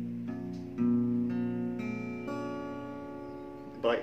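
Acoustic guitar in a lowered tuning, its strings plucked one after another about every half second from low to high and left ringing together, sounding out the tuning to copy.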